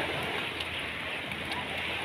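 Steady trickling and lapping of sea water around a small wooden outrigger fishing boat, with a few faint light ticks.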